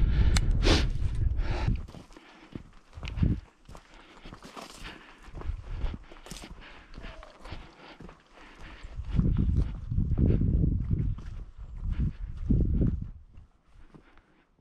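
Footsteps of a person walking over stony, ploughed ground, a steady run of crunching steps. Bouts of low rumble come at the start and again about nine and twelve seconds in.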